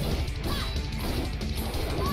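Animated action soundtrack: music under a rapid run of sword clashes and crashing impacts from a sword fight against robots.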